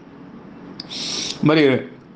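A man's voice in a spoken discourse: a short pause, then a brief hiss about the middle, then a single spoken word near the end.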